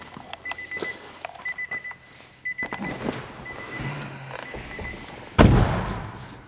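Nissan Murano CrossCabriolet warning chime sounding with the driver's door open: a high electronic beep of a few quick pulses, repeating about once a second. Near the end the driver's door shuts with a heavy thud, the loudest sound.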